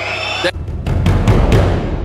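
A short looping music snippet with a chanted "de, de", cut off about half a second in by a sudden deep bass boom that swells and rings for about a second and a half: an edited-in meme sound effect.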